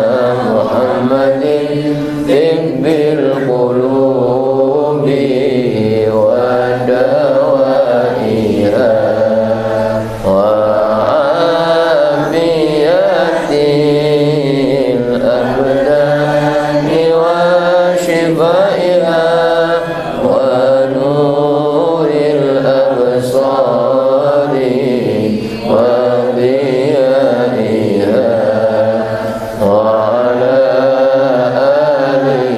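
A man's voice chanting an Arabic prayer (du'a) into a microphone in long, continuous melodic phrases, pausing only briefly for breath a few times.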